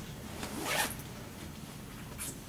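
Dry-erase marker writing on a whiteboard: one scratchy stroke a little under a second in, with a fainter one just before.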